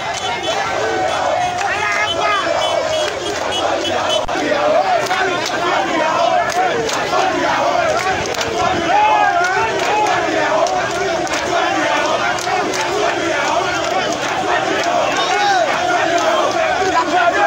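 A large crowd of men shouting and jeering all at once, many voices overlapping without a break.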